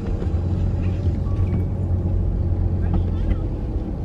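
Steady low rumble of a V6 Acura TL's engine and tyres, heard from inside the cabin while driving.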